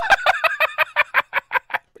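A man laughing hard: a loud, high-pitched run of short bursts that slows and trails off over about two seconds.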